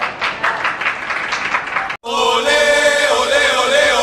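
Voices cheering and shouting in quick bursts for about two seconds, then a sudden cut to a loud goal-replay jingle: music with a held chord and a gliding, sung-sounding melody.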